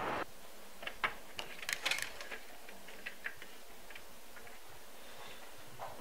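Faint, scattered small clicks and rustles over quiet indoor room tone, busiest between one and two seconds in; a steady outdoor hiss cuts off just after the start.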